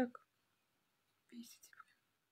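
A woman's voice only: the end of a spoken word at the start, then a short soft whispered utterance about a second and a half in, with quiet between.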